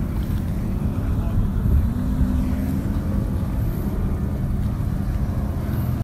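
Powerboat engines running at speed as the boats race past, a steady low drone with an engine tone that holds through the whole clip.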